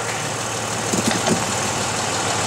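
2007 Dodge Nitro's V6 engine idling steadily, heard from underneath the vehicle.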